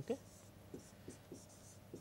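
Faint scratches and taps of a stylus writing on a pen tablet, a handful of short strokes in an uneven rhythm.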